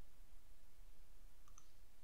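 Quiet room tone with a faint low hum, and a single faint mouse click about one and a half seconds in.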